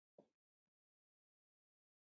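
Near silence, with one faint short blip about a fifth of a second in.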